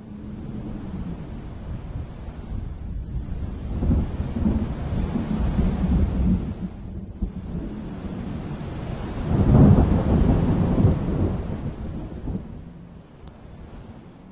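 Thunder rumbling over steady rain, swelling in long rolls about four and six seconds in, loudest near ten seconds, then fading away.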